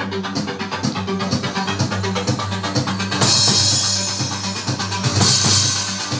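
Electronic drum kit played along to a rave track: a fast, even beat over a steady bass line, with cymbal crashes coming in about halfway through and again near the end.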